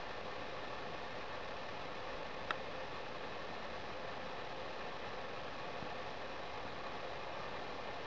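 Steady, even hiss with one short sharp tick about two and a half seconds in.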